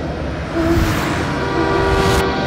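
Trailer sound design: a rising whoosh about half a second in, then a loud, sustained horn-like chord swelling from about a second and a half in.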